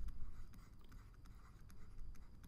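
Faint scratches and light taps of a stylus writing on a tablet screen, over a low steady hum.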